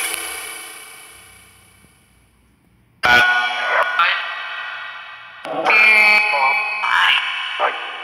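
Necrophonic spirit-box app playing chopped snippets from its sound bank through heavy echo and reverb, meant to be heard as spirit voices answering questions. One snippet fades away over the first two seconds to near silence, then new snippets cut in abruptly about three seconds in and again around five and a half and seven seconds.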